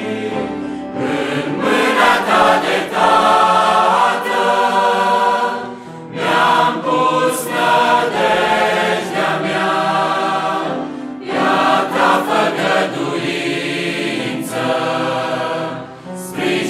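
Large mixed choir of men and women singing a hymn in Romanian, in harmony, with short pauses between phrases about six and eleven seconds in.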